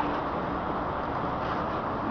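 Steady background noise of road traffic, with a single faint knock right at the start, a tennis ball struck by a racket during a rally.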